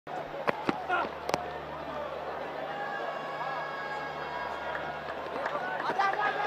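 Cricket stadium ambience: a steady crowd murmur with faint distant voices. Three sharp knocks come in the first second and a half, among them the bat hitting the ball.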